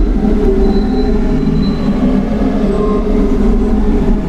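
A loud, steady mechanical rumble with low humming tones, like a vehicle running.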